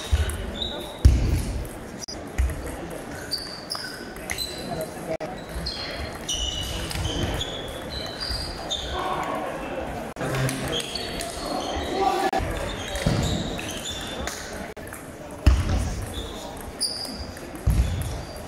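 Table tennis balls ticking on tables and bats at irregular intervals across a sports hall, with a few louder low thumps.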